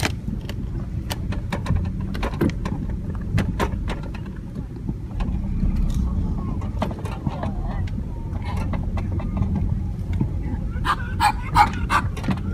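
Handheld phone microphone outdoors while walking: a steady low rumble, typical of wind on the mic, with scattered irregular clicks and scuffs of handling or footsteps. Brief voices come in near the end.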